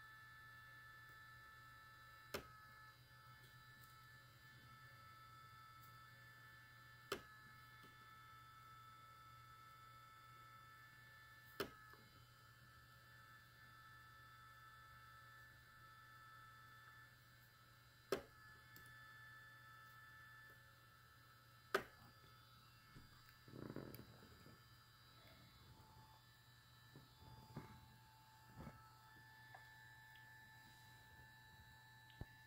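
Malectrics Arduino spot welder firing five weld pulses through nickel strip onto battery cells, each a single sharp crack, several seconds apart, over the faint steady hum and whine of the welder's cooling fan. Softer handling noise from the probes near the end.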